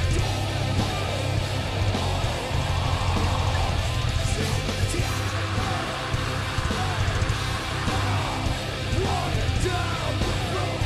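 Heavy metal band playing live at full volume: distorted electric guitars, bass and pounding drums under a harsh, shouted vocal.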